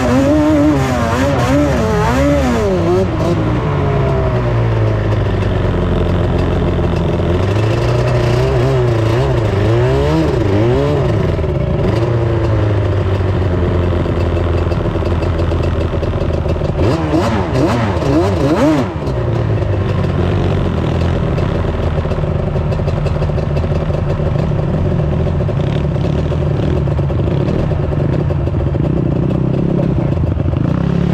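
Sport quad (ATV) engines revving hard in repeated surges on a steep sand dune climb, the pitch swinging up and down with the throttle. From about two-thirds of the way in, the engine settles into a steadier, lower running note.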